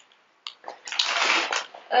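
Packaging rustling as a hand rummages through a box of products, with a few short clicks about half a second in followed by a longer rustle.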